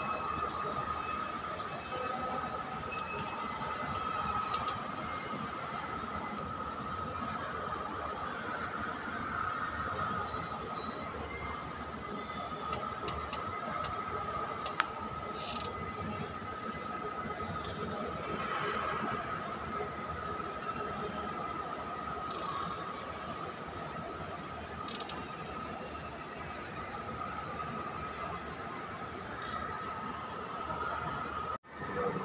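Steady rushing background noise with a constant high-pitched whine running through it, broken by a few faint clicks.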